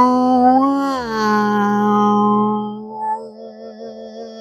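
A woman's voice holding one long, open-mouthed vocal tone. The pitch slides down a step about a second in, and the tone drops to a quieter, wavering note near the end. This is vocal toning used as a meditation to release tension through sound and vibration.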